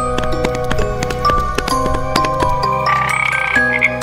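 Light, cheerful children's background music, with a cartoon frog's croak sound effect near the end.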